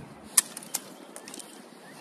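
One sharp snip of pruning shears cutting through a dead hydrangea cane, followed by a fainter click and a few light ticks of stems, over quiet outdoor background.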